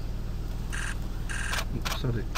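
Camera shutter firing in short rapid bursts: one burst about two-thirds of a second in, a second just past the middle, then a single click near the end, over a steady low hum.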